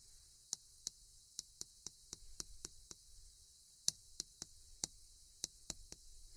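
Chalk tapping on a blackboard as characters are written stroke by stroke: a faint, irregular run of short clicks, about twenty in all.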